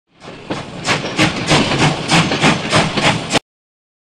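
Steam locomotive chuffing, with hissing puffs about three a second that cut off suddenly near the end.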